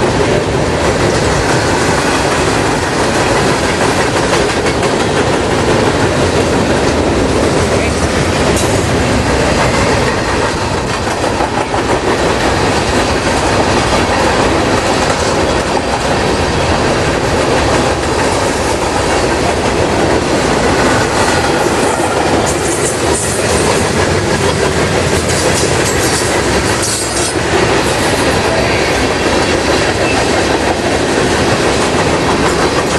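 Freight cars rolling past at speed: a steady rumble of steel wheels on rail with clickety-clack over the rail joints. Brief high-pitched squeals come in the second half.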